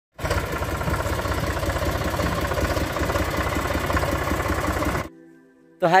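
Farm tractor's diesel engine running as the tractor drives, a steady sound with a fast low throb. It cuts off abruptly about five seconds in, leaving a faint steady tone before a man's voice at the very end.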